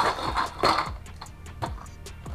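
Cardboard packaging inserts being lifted and handled, with two rustling scrapes in the first second and quieter handling after, over background music with a beat.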